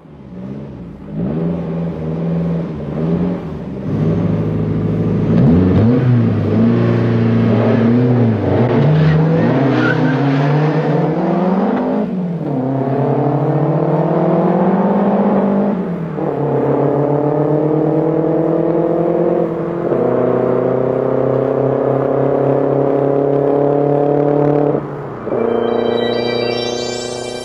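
Saab four-cylinder petrol engine revving up and down, then accelerating hard through the gears: the pitch climbs steadily three times, each time dropping suddenly at a gear change.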